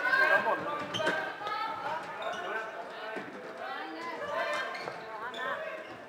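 Floorball players' voices calling and shouting across a large sports hall, with a couple of sharp knocks of play in the first second or so.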